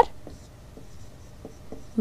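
Faint scratching of handwriting as a writing tool moves across the writing surface.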